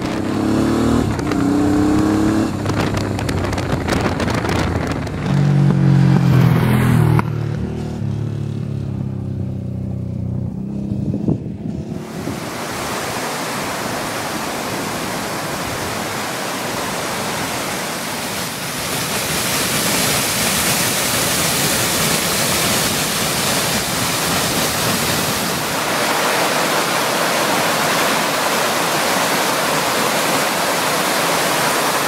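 Honda Africa Twin XRV750's V-twin engine running as the bike is ridden, with wind on the microphone; the engine's pitch shifts up and down. About twelve seconds in it cuts to the steady rush of water cascading down a small waterfall over mossy rock steps.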